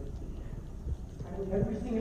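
Low rumble of a hall's room tone with a few soft low knocks. About a second and a half in, a man's voice starts speaking.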